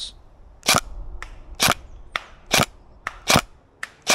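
Tokyo Marui MP5SD NGRS electric airsoft gun firing single shots on semi-auto: four sharp shots about a second apart, with fainter clicks between them.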